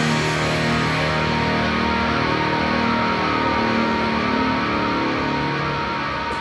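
Instrumental passage of an alternative rock song: guitar notes held and ringing at a steady level, with no drum hits.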